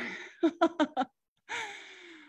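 A woman laughing in four short voiced bursts, then a breathy sigh that falls in pitch.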